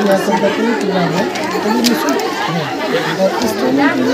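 Several people talking at once: a steady chatter of overlapping voices, with no single clear speaker.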